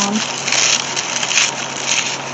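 Dried apple mint leaves crackling and crunching as a hand squeezes and crumbles a dried bundle, the brittle pieces falling onto paper, with a few louder crunches along the way.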